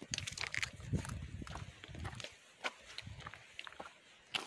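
A crisp apple bitten into and chewed right at the microphone: a burst of crunching in the first second, then wet chewing, with a few footsteps later on.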